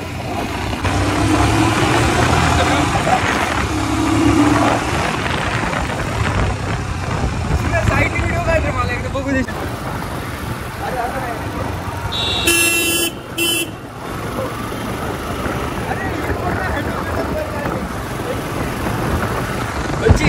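Motorcycle riding in road traffic, with steady engine and wind noise. A vehicle horn honks twice in quick succession about two-thirds of the way through.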